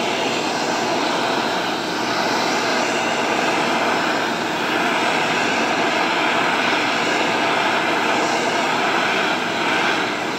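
Handheld gas torch on an extension hose, its flame burning with a steady hiss as it is swept back and forth across pine boards to scorch the wood.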